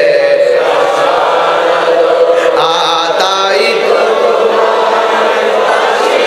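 A man's voice chanting a melodic Islamic devotional refrain, amplified through microphones, in long held sung lines.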